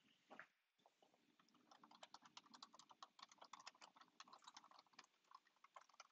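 Faint computer keyboard typing as a short line of text is typed: a quick run of key clicks from about a second and a half in to about five seconds, then a few scattered keystrokes.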